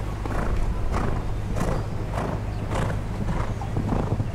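A horse cantering on arena sand, its hooves landing in a regular stride with a dull thud about every half second, over a steady low rumble.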